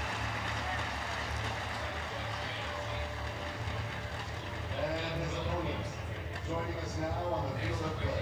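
Outdoor arena ambience: a steady low rumble under a crowd murmur, with a distant, indistinct voice coming in about five seconds in.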